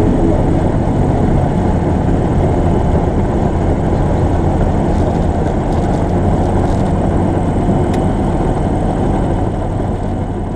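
Diamond HK36 TC100 Super Dimona's Rotax 912 flat-four engine and propeller running steadily, heard from inside the cockpit.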